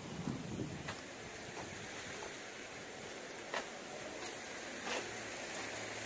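Faint steady outdoor background noise, a hiss like wind on a phone microphone, with a few faint clicks. A low steady hum comes in about five seconds in.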